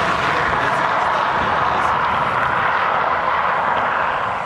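A car driving on the asphalt road: a steady rush of tyre and engine noise.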